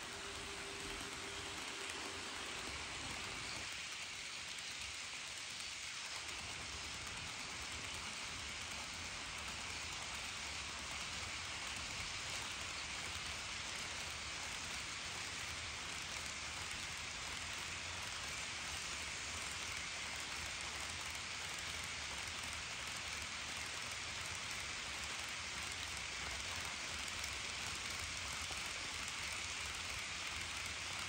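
HO scale model freight train rolling past: a steady rushing clatter of the many small wheels of covered hopper cars on the track. A steady hum from the passing model locomotives' motors fades out about three seconds in.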